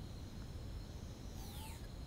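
A pause in the talk: quiet, steady low background hum, with a few faint sliding high chirps about one and a half seconds in.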